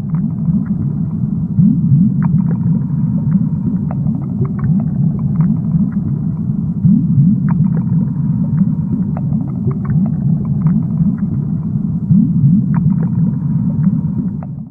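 A loud, steady low rumble with many short rising glides in it and scattered faint clicks above.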